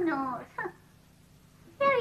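A high-pitched voice trails off in a drawn-out cry that slides down in pitch and dies away within the first half second. Near quiet follows until speech begins near the end.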